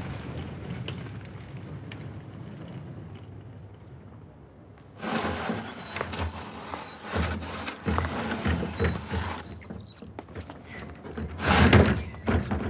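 A low rumble fades away over the first few seconds; then, about five seconds in, a plastic wheelie bin is rolled over paving stones, its wheels rattling and clicking over the joints along with footsteps. Near the end comes one loud thump.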